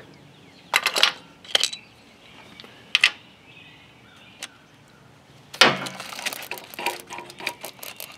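Steel hand tools clinking against engine metal as a socket and ratchet take out the 10 mm bolts holding the wiring-loom bracket to the alternator. There are single sharp clinks, a louder clatter a little past halfway, then a run of quick light clicks near the end.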